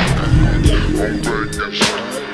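Chopped and screwed hip hop: a slowed-down beat with deep bass and drum hits.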